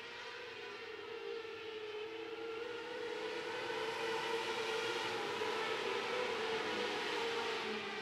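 A field of 600cc micro-sprint cars running laps on a dirt oval, their high-revving motorcycle engines blending into a steady high-pitched wail. The sound grows louder over the first few seconds and then holds.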